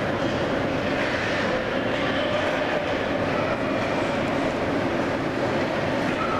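Steady rumble and hiss of an indoor ice hockey rink during play, with a faint steady hum running under it.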